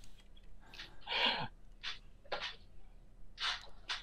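A person's quiet breathing: about half a dozen short, breathy puffs of air, one of them slightly voiced and falling in pitch.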